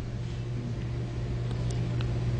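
A short pause in speech filled by a steady low hum with faint background hiss, as from a microphone and amplifier system.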